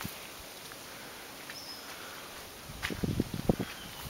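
Quiet outdoor ambience, a faint steady hiss, with one brief faint high chirp about a second and a half in. Near the end come a few low, uneven thumps and rustles.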